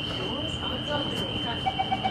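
Singapore MRT CT251 train's door-closing warning: a rapid run of short beeps starts near the end, over a steady high-pitched tone and faint background voices. It signals that the doors are about to close.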